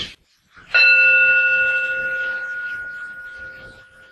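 A meditation bell struck once, a little under a second in, ringing with a clear tone of several pitches that fades slowly.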